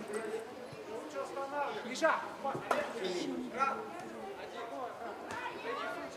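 Players' and onlookers' voices calling out and chattering, with two sharp knocks about two seconds in and shortly after.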